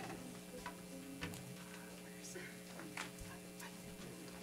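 Faint stage setup noises: a few scattered clicks and knocks as instruments and microphone stands are handled, over a steady low hum.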